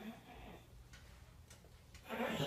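Near silence: faint room tone with a couple of soft clicks.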